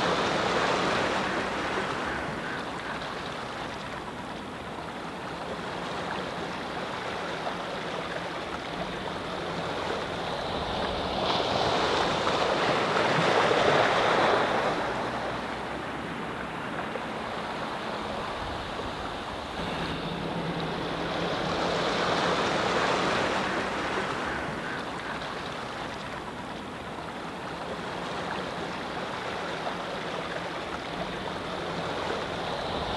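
Rushing outdoor ambient noise that swells and fades slowly three times, loudest about 13 seconds in, with a faint steady low hum underneath at times.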